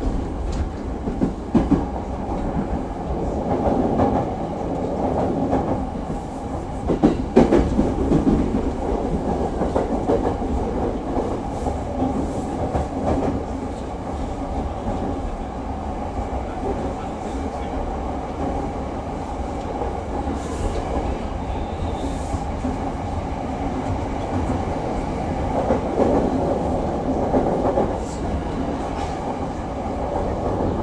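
Commuter train running between stations, heard from inside the car: a steady running noise with a few sharp clicks and slight swells in loudness.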